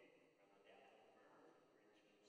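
Near silence: faint room tone of a large indoor arena, with a low, indistinct murmur of voices.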